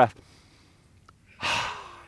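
A person drawing in one deep, audible breath about a second and a half in, a breathy rush that fades away over about half a second.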